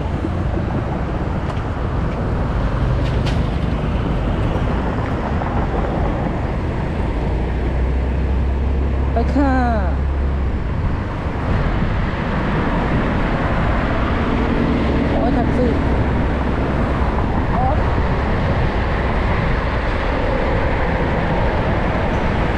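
Steady rush of wind and road noise on the microphone while riding a Yamaha Grand Filano Hybrid scooter through city traffic, with a deep rumble underneath.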